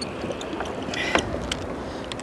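Steady low wind and water noise around a small fishing boat on choppy water, with a few faint clicks.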